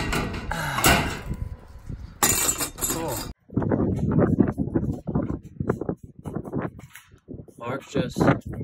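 Metal snips cutting sheet-metal roof flashing: a few sharp metallic snips and clinks. About three seconds in the sound cuts off abruptly and gives way to an irregular low rumble.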